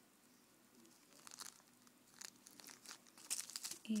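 Small clear plastic baggies crinkling as they are handled. Quiet at first, then scattered light crackles from about a second in, growing busier toward the end.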